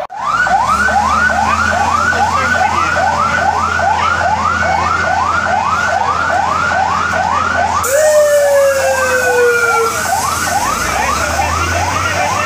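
Fire engine's electronic siren on a rapid yelp, each note sweeping up in pitch, about two and a half a second, over a low engine rumble. About eight seconds in, a long horn blast of about two seconds sounds over the siren, falling slightly in pitch.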